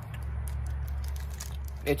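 Faint chewing of a teriyaki beef stick, with small clicky mouth sounds over a steady low hum. A short spoken word comes near the end.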